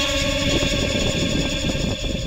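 Bicycle tyres rolling on asphalt with wind on the microphone, a steady rushing noise, while a few held tones left over from the background music fade out.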